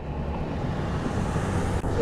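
Steady road noise inside a moving car: a low rumble of engine and tyres with wind rushing past the windows.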